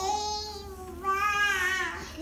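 A young child's voice singing or crooning two long drawn-out notes: a steady one first, then a higher, wavering one about a second in.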